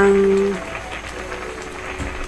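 A woman's voice holds a drawn-out syllable for about half a second. After that, broth simmers softly with a low bubbling in a wok of banana-leaf-wrapped fish parcels.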